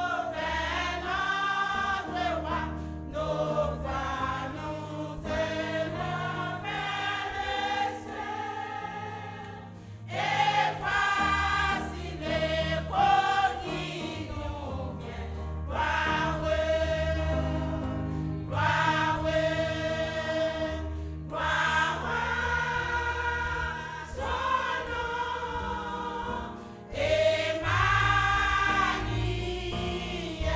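Women's church choir singing together in long phrases, over low sustained notes underneath. The singing dips briefly about ten seconds in and again near the end, then comes back in full.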